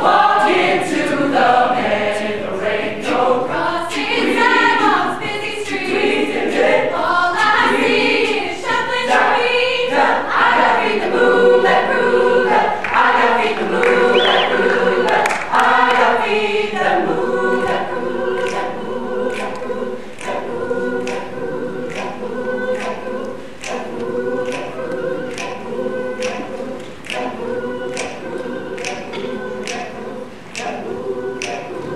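Mixed high school choir singing a cappella in close harmony. After about seventeen seconds the voices settle into long held chords under a regular clicking beat.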